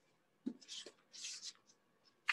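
Faint rustling and rubbing of paper in a few short bursts, with a soft knock about half a second in: a picture book being handled.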